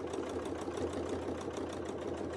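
Domestic sewing machine running steadily at speed, its needle stitching through a quilt in free-motion quilting with a fast, even stitching rhythm.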